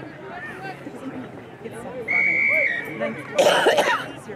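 A referee's whistle gives one steady, high-pitched blast of about half a second, signalling the kick-off restart. About a second later, someone close to the microphone gives a loud cough.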